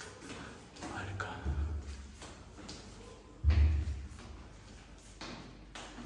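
A few dull thumps, the loudest about three and a half seconds in.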